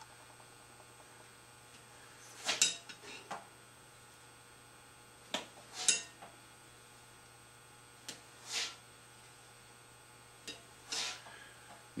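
A modified metal cheese-cutter wire slicing facets up the wall of a soft clay pot: four quiet strokes about two and a half seconds apart, each a light metal click followed by a short swish.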